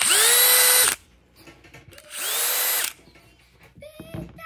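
DeWalt DCD1007 20V cordless hammer drill run in two short trigger pulls of under a second each. Each time the motor whines quickly up to speed, holds briefly and stops. The second pull is a little quieter.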